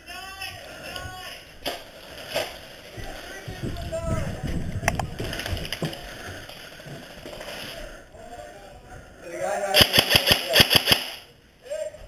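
G&P airsoft electric gun (AEG) firing a rapid string of about ten shots, each a sharp snap with the gearbox whining under it, near the end. Before it, only faint voices and shuffling.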